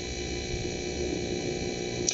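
Steady background hiss with a low hum and rumble: the recording's noise floor in a pause between spoken phrases.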